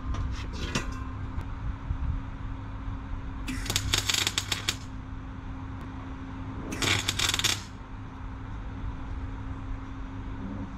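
Electric arc welder laying two short tack welds, each a burst of crackling and spitting lasting about a second, the first a few seconds in and the second a couple of seconds later, with a few light metal clicks near the start and a steady low hum throughout.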